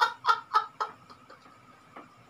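Two people laughing hard in quick, breathy bursts, about four a second, trailing off after about a second into near quiet.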